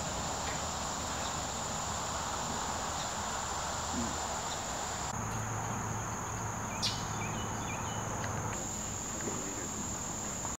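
Steady high-pitched drone of insects in summer vegetation, its pitch stepping slightly lower about five seconds in and back up near the end. A single sharp click just before seven seconds.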